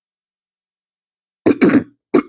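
A man clearing his throat about a second and a half in, after silence: a short rasping burst from the voice.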